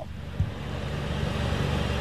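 Low, steady rumble of motor-vehicle traffic, with one brief thump about half a second in.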